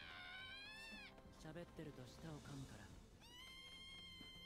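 Anime episode soundtrack playing quietly: a drawn-out high-pitched cry that rises and then falls over about a second, then a character's low dialogue, then a long held high note near the end.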